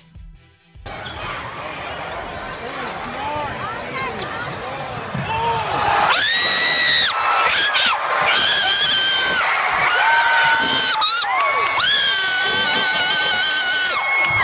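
Basketball arena crowd cheering and shouting in a win celebration, getting louder about six seconds in, with several long high-pitched screams standing out over the noise.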